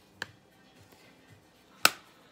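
Handling clicks from a plastic eyeshadow palette compact, the Touch in Sol Metallist: a faint click just after the start and a sharp, louder click near the end as the lid snaps shut.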